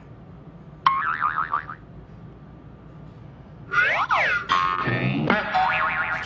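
Cartoon sound effects played back from a TikTok video. A short wobbling, warbling effect comes about a second in, then tones that slide up and down together just before four seconds, followed by more pitched cartoon noises.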